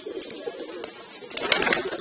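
Domestic pigeons cooing in a low, steady drone. A louder scuffling noise comes in about one and a half seconds in.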